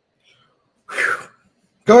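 A man lets out a single short, forceful breath about a second in, a sharp exhale lasting about half a second.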